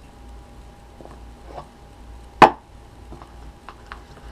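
Small cardboard gift boxes handled on a tabletop: light taps and clicks, with one sharp knock about two and a half seconds in, over a faint steady hum.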